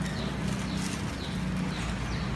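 A thin plastic carrier bag rustling as it is opened, over a steady low hum. Short high chirps repeat about twice a second.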